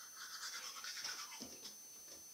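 Faint scrubbing of a toothbrush brushing teeth, quick strokes that die down in the second half.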